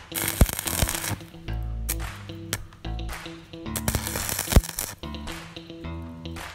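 Stick welding arc crackling and sputtering in two main bursts, near the start and about four seconds in, as a flat steel bar is tack-welded.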